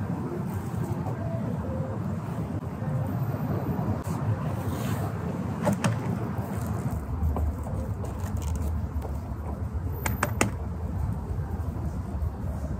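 Street traffic running steadily past, with a low rumble that swells about seven seconds in as a vehicle passes, and a few sharp clicks near the end.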